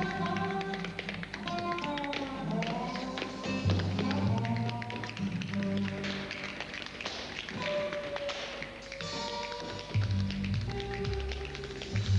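Quick dance steps, with hard-soled shoes tapping rapidly on a hard floor, over instrumental music with a held melody and a bass line.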